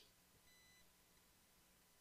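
Near silence, with only a faint steady tone in the background.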